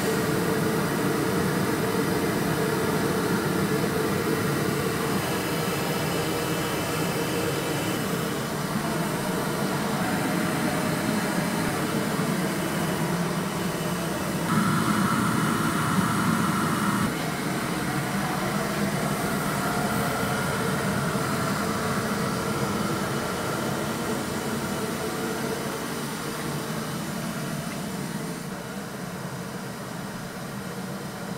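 Steady rushing roar of a kiln firing. About halfway through, a louder, higher-pitched stretch lasts a couple of seconds, and the roar eases slightly near the end.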